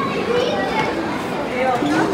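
Many children's voices at once: a busy hubbub of kids talking and calling out over each other.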